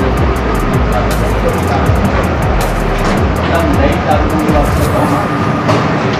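Busy market din: indistinct voices with music playing, and a low rumble of traffic that fades about a second and a half in.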